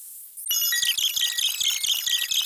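Faint hiss, then about half a second in a fast, high-pitched electronic ringtone-style melody starts, with a quick ticking beat under it.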